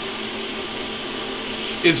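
Steady fan-like whir with hiss, running evenly with no knocks or changes.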